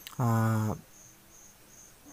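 A man's voice holds one steady filler vowel for about half a second near the start. Behind it a cricket chirps in short high pulses, about three a second.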